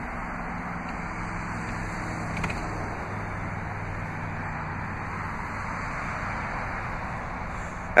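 3.6-litre Pentastar V6 of a Chrysler 200S idling, a steady low hum that fades after about four seconds, under a steady outdoor hiss. A faint click about two and a half seconds in.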